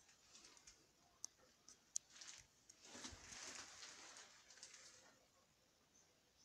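Faint rustling and crinkling of a thin plastic rain poncho as the wearer moves, with a few sharp clicks; the rustle is fullest about three to five seconds in.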